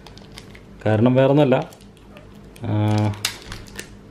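A man speaking in two short phrases, with small clicks and rustles from hands handling a cylindrical lithium battery cell and its insulating wrap.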